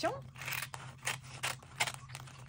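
Scissors snipping through a magazine page: a run of short, sharp cuts a few tenths of a second apart.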